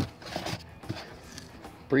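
A few faint, short scrapes and taps as a hand handles the wind turbine's plastic nose cone in its styrofoam packing.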